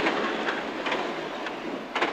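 Cabin noise of a Peugeot 205 GTi 1.9 rally car: engine and road noise as a steady rumbling rush that fades steadily as the car slows for a hairpin left.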